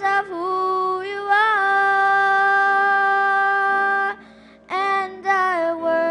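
A young girl singing a song solo into a handheld microphone. She holds one long note for about three seconds, stops briefly, then sings on in shorter phrases.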